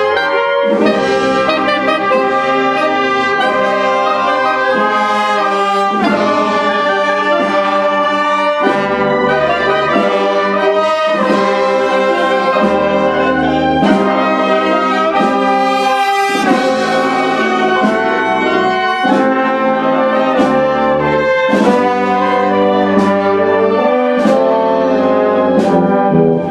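Marching brass band playing a processional march, with trumpets and trombones close by, sustained chords moving from note to note and a few sharper accents.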